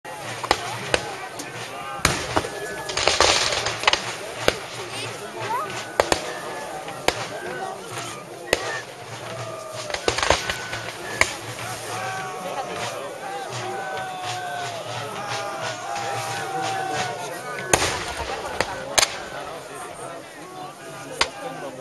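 Irregular black-powder musket fire: a dozen or more sharp cracks at uneven intervals, with a quick flurry of shots about three seconds in. Many people talk underneath.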